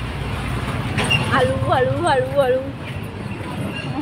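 Steady low rumble of vehicle engines in street traffic, with a woman's voice talking over it for a couple of seconds.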